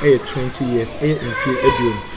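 Speech: a man talking, with a higher-pitched voice over about the second half.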